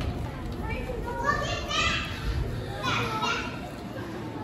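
Several children calling out together in high voices, loudest around the middle, over the rumble of movement on a stage in a hall.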